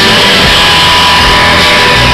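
Live rock band playing very loud, with bass guitar and electric guitars, recorded from the audience.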